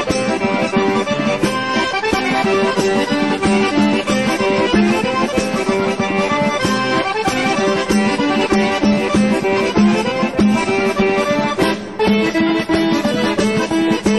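Background music: a lively traditional folk tune led by accordion, with a steady beat.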